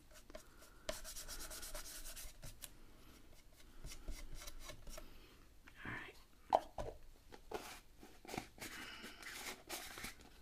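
Soft scratchy brushing of a paintbrush spreading gesso over tissue paper for the first couple of seconds. It is followed by scattered small clicks and rustles of craft supplies being handled, with one sharper tap about six and a half seconds in.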